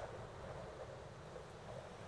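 Faint steady background noise: a low rumble and hiss of room ambience, with no speech or music.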